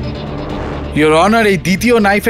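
Background drama score of sustained low drone and held tones, giving way about a second in to a man speaking loudly.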